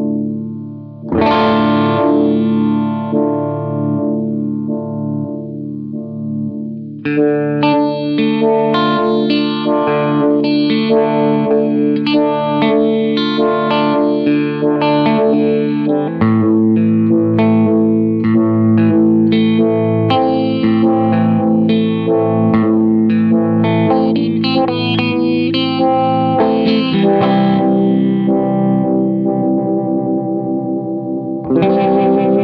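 Electric guitar, a Paul Reed Smith CE 24, played through a Poison Noises Lighthouse Photo-Vibe vibrato/phaser pedal with some drive. A chord is struck about a second in and left to ring with a slow, pulsing wobble. From about seven seconds in comes a steady run of picked notes and chords.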